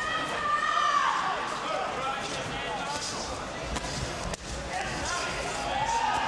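Boxing gloves thudding as punches land to the body during close-range infighting in a clinch, with shouting from ringside over them.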